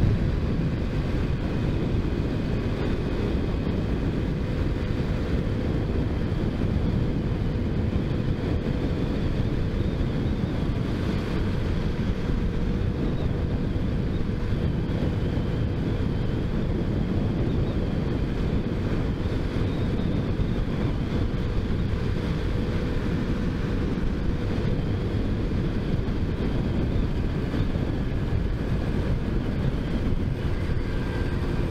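Motorcycle running at a steady cruising speed, its engine note holding even, with wind rushing over the on-board camera's microphone.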